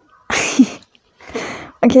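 A young woman's stifled laughter: two breathy bursts of air, each about half a second long, the first about a third of a second in and the second a little after a second in.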